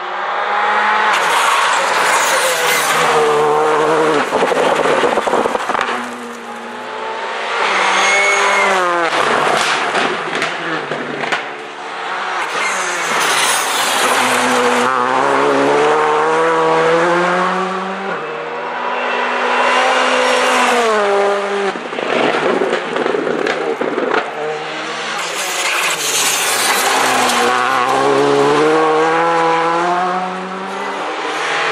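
A Škoda Fabia R5 rally car at speed on a tarmac road, heard in about five separate passes. In each, the engine revs drop as it brakes for a bend, then climb sharply as it accelerates away through the gears.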